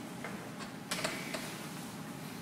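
A stylus tapping and scratching on a tablet screen while handwriting, as a few short ticks, with the loudest about a second in, over a steady low room hum.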